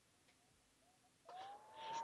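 The Hawaiian amateur radio beacon received on a ham transceiver: a faint, steady whistle-like tone. It comes in about a second in, sliding up briefly before holding steady. The signal is arriving from about 2,500 miles away over a tropospheric duct.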